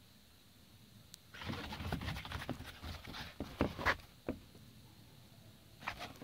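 A pit bull's paws scrabbling and crunching in snow as it spins in circles, a burst of about three seconds starting a second or so in, with a few sharp clicks, then a couple of lone scuffs.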